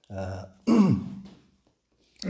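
A man's short non-word vocal sounds, in two brief bursts; the second slides down in pitch.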